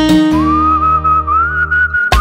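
A person whistling a Tamil film-song melody over instrumental backing. One long whistled line enters about a third of a second in and climbs slowly in pitch through held notes.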